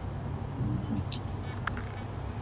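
Steady low background rumble picked up by a video-call microphone, with a brief faint murmur of a voice about half a second in and a small click about a second in.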